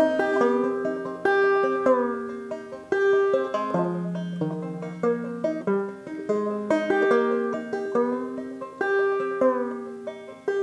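Acoustic string band playing an instrumental passage of an old-time or bluegrass tune: quick plucked notes over a few held tones, at a lively, even pace.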